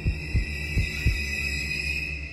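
Heartbeat-like sound effect in a documentary score: low thumps, about four, spaced roughly a third of a second apart, stopping a little past halfway, over a low hum and a steady high-pitched whine.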